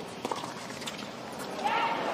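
Tennis rally: sharp racket-on-ball hits about a quarter second in and again near one second, with a voice calling out near the end.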